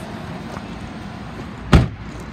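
A single loud car-door clunk about three-quarters of the way through, as a door of the Ford Taurus Police Interceptor is worked. It is heard over a steady low hum.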